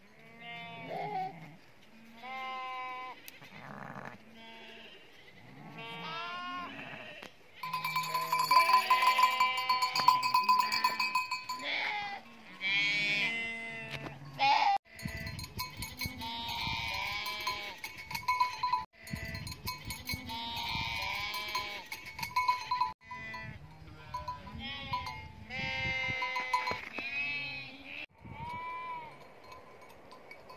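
A flock of sheep and goats bleating, many separate overlapping calls one after another. For stretches a steady ringing like livestock bells sounds over the bleats.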